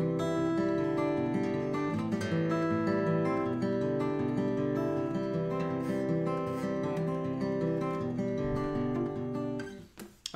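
Acoustic guitar fingerpicked, thumb and fingers alternating bass and treble notes over a simple chord progression. Near the end the notes are damped and the playing stops.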